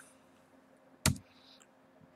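A single sharp click about a second in, from a computer key or mouse button, over a faint steady hum.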